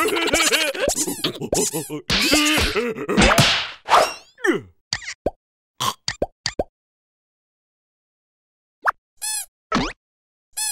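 Cartoon soundtrack: the two larva characters' excited wordless squealing and shrieking for the first few seconds. Then a run of quick sliding cartoon sound effects and plops, a pause, and three short matching pitched blips near the end.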